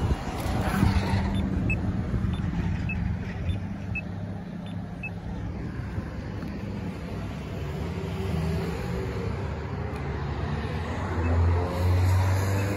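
City bus engine running as it pulls away, over steady street traffic. There are a few faint short high beeps in the first few seconds, and a low vehicle hum grows louder near the end.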